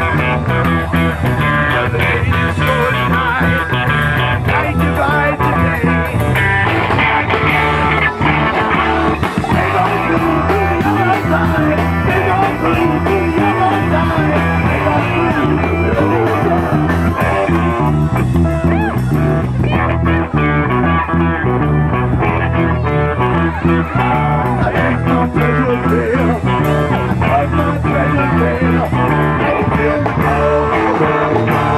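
Live rock band playing a classic rock song: electric guitars, bass guitar, drums and keyboard, loud and steady.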